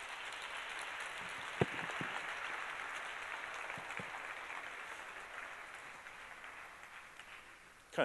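Audience applause that builds over the first second or two, holds steady and then slowly tapers off near the end. One sharp click stands out about one and a half seconds in.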